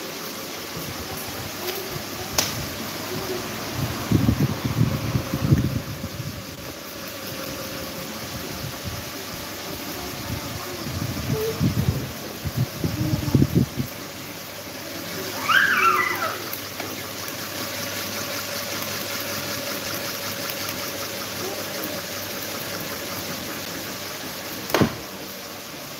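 Several electric fans, a pedestal fan and desk fans, running together: a steady rush of moving air with a faint steady hum. Low rumbling bursts twice in the middle, and a brief high squeal a little past halfway.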